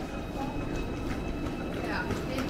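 ICE high-speed train rolling slowly past on the far track, a steady low rumble with a thin, steady high whine over it.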